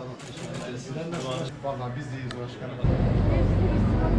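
Indistinct voices of people talking during greetings. Nearly three seconds in, the sound cuts abruptly to a louder, steady low rumble of outdoor street noise.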